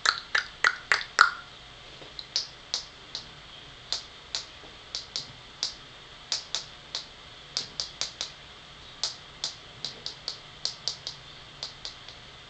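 A run of sharp, irregular clicks or taps. A quick, louder cluster comes in the first second, then they go on more softly at about two or three a second.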